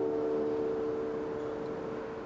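The last chord of an acoustic guitar ringing out and slowly dying away, one note held longest, over a faint steady hiss.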